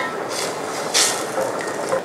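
Steady hiss from a steel saucepan of brown sauce simmering on a gas burner. Two brief louder swishes come about half a second and a second in, from a spoon stirring the pan.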